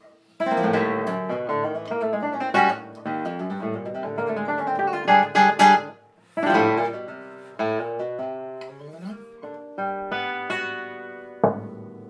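Solo classical guitar playing a contemporary piece: a sudden loud entry about half a second in, dense plucked chords and runs, three sharp accented strikes a little past the middle, a brief break, then sparser ringing notes with one more sharp accent near the end.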